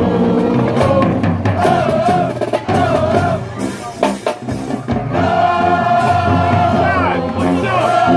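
High school marching band playing from the stands: brass with sousaphones holding wavering sustained notes over drums. About four seconds in the band drops out for a moment, punctuated by a few sharp drum hits, then the full band comes back in.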